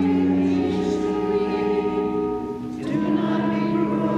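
A congregation singing a hymn together in held, sustained chords. The harmony changes about a second in and again near the end, after a brief dip in loudness.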